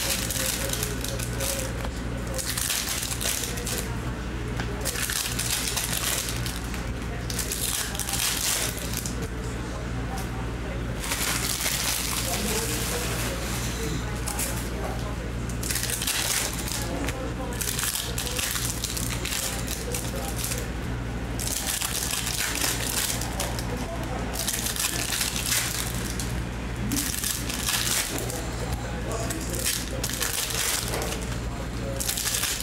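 A stack of chrome trading cards being thumbed through by hand, each card slid off the stack with an irregular swish and light clack, over a steady low hum.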